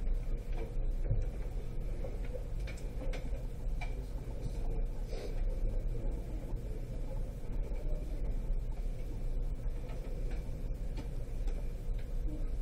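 Pen writing on paper, with faint scratches and small taps of the strokes over a steady low hum.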